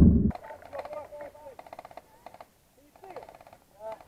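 Short bursts of airsoft rifle fire in the distance, a rapid ticking of about twenty shots a second, with faint shouting voices. A brief loud low thump of handling noise on the microphone at the very start.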